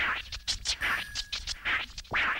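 DJ turntable scratching opening a hip hop track: a quick run of short back-and-forth record scratches, two or three a second.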